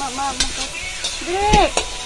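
A wooden spoon stirring sliced bell peppers and onions frying in a steel wok, with a light sizzle and a few sharp knocks of the spoon against the pan. A short voice-like sound that rises and falls in pitch comes about one and a half seconds in.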